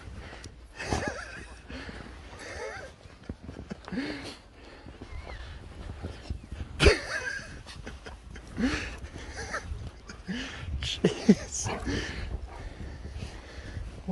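An Alaskan Malamute making a scattering of short vocal sounds that rise and fall in pitch while bounding through deep snow, with a few sharp crunches of snow, the loudest about seven seconds in.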